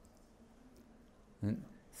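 A pause in a man's talk: quiet room tone, then a brief vocal sound from him about one and a half seconds in, before he starts speaking again at the very end.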